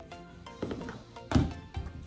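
A single thunk about one and a half seconds in, with a couple of lighter knocks around it: a stretchy Goo Jit Zu toy figure hitting a hardwood floor. Background music plays throughout.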